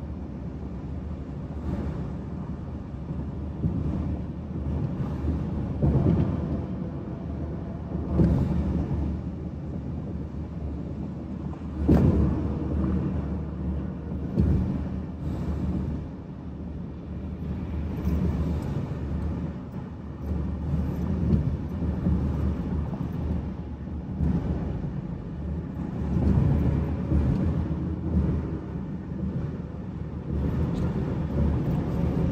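Car driving at highway speed: steady low road and tyre rumble with wind, broken by a few short thumps, the loudest about twelve seconds in.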